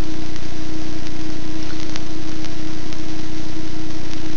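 A steady hiss with a constant low hum, unchanging throughout, and a few faint clicks.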